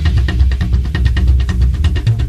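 A rockabilly-style band playing with upright bass, drums and electric guitar. A low bass line runs under a fast, even beat of about eight short hits a second, with the middle of the sound thinning out for a moment.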